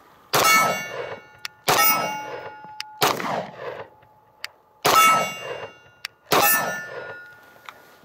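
Five single pistol shots from a Beretta PX4 Storm, fired slowly and evenly about one and a half seconds apart, each ending in a metallic ring. After several of the shots a faint sharp tick follows about a second later.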